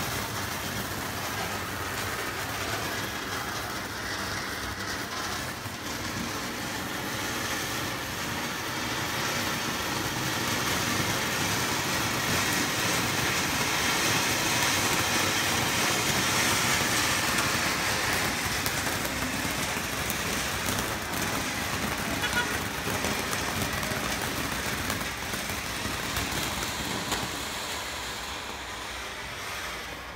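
Ground fountain fireworks spraying sparks: a steady, loud rushing hiss that builds towards the middle and eases near the end, with a couple of sharp cracks in the second half.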